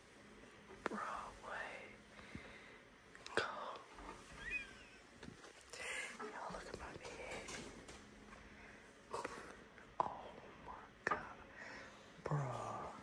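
Faint, hushed human voices, whispered or low talk, broken up by a few soft clicks and knocks.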